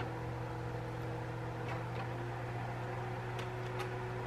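A steady low hum in the kitchen, with a few faint light taps as raw bacon strips are laid into a nonstick skillet.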